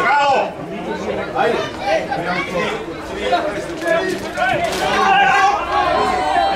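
Several people talking over one another throughout.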